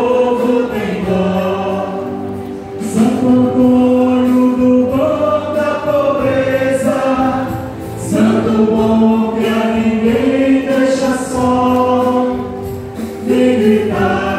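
A church congregation singing a Portuguese hymn to Saint Anthony together, in three slow phrases of long held notes with a short break between them.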